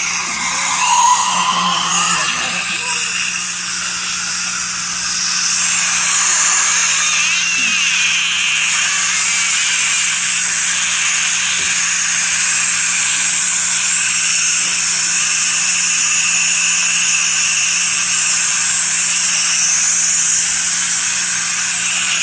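Dental suction hissing steadily as it draws blood and saliva from the mouth at fresh tooth-extraction sites, over a steady low hum; it gets a little louder about five seconds in.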